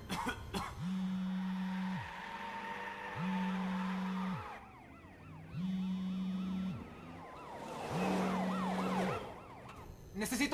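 A telephone ringing tone heard on a call, four low rings about a second long each, evenly spaced, over eerie music with sliding, wavering tones.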